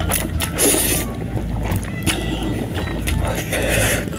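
Close-miked eating sounds: a person slurping and chewing a mouthful of spicy instant noodles, with many short wet mouth clicks over a steady low hum.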